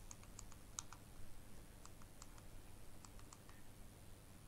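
Near silence with about a dozen faint, irregularly spaced light clicks over a low steady hum.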